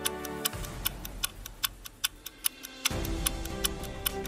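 Countdown-timer clock ticking in steady, sharp ticks over background music; the music's bass drops away about half a second in and comes back near the end.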